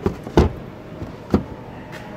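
Side mirror of a 2017 Mitsubishi Outlander being folded by hand, clacking on its hinge: two sharp clacks about a second apart, the first the louder.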